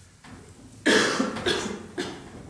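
A man coughing: two loud coughs in quick succession about a second in, then a fainter one at the end.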